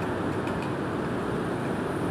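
Steady background noise of the recording, an even low rush with no distinct events.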